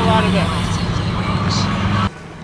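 Car moving with the driver's window open: rushing wind and road noise over a steady engine drone, with a man's voice briefly at the start. It cuts off suddenly at the end.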